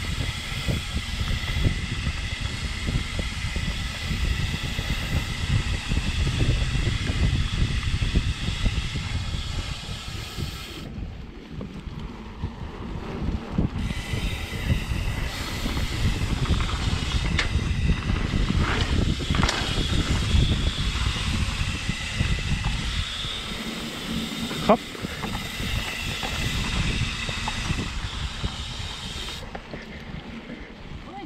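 Mountain bike running fast down dirt singletrack: wind buffeting the microphone over tyres rolling on dirt and leaves, with a steady high whir from the coasting rear hub that drops out for a few seconds in the middle. Scattered sharp clicks and knocks from the bike, with one louder knock near the end.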